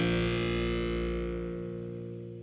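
The final chord of a rock song, played on distorted electric guitar with effects, ringing out and fading away steadily.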